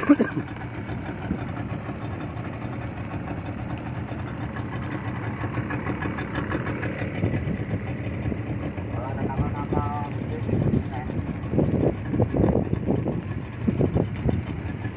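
A 40 hp Yamaha outboard motor running steadily as the boat moves along. Faint voices come in over it in the second half.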